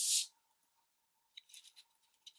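A short swish of paper sliding across a tabletop at the start, then faint rustles and light taps of paper being handled about a second and a half in.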